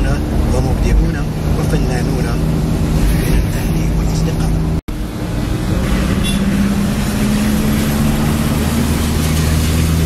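Steady engine drone and road noise of a car driving on wet streets, heard from inside the car, with voices talking over it. The sound cuts out abruptly for a split second about five seconds in.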